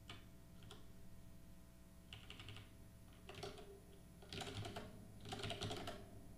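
Faint typing on a computer keyboard in short bursts of keystrokes, the busiest and loudest in the last two seconds.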